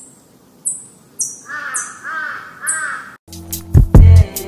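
Three crow caws, each a short arched call, over a run of sharp high hissing bursts. A music track with heavy drums starts near the end.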